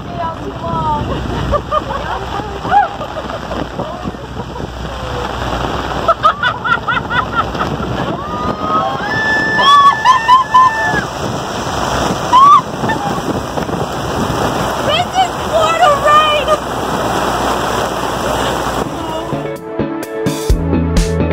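Heavy rain pouring down on a lake and an open pontoon boat, a steady hiss, with women laughing and squealing over it in several bursts. Music comes in at the very end.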